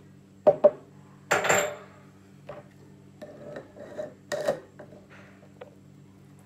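Glass and metal spice-jar parts knocking and clinking on a table: two sharp clicks about half a second in, then a short rush of dry ground spice (sumac) being poured or shaken into the jar, then scattered lighter knocks and clicks as the steel shaker lid is handled and fitted.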